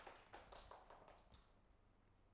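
Near silence: faint room tone with a few soft taps or clicks in the first second and a half.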